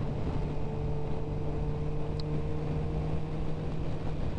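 Suzuki GSX-R sportbike's inline-four engine running at steady cruising revs, a constant hum with wind noise over it.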